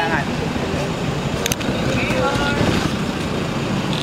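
Brief talking between people over a steady rumble of street noise, with a sharp click about a second and a half in.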